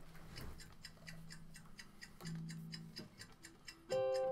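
Quiet intro of a recorded song playing as a backing track: a steady ticking beat at about four ticks a second over a faint low held tone.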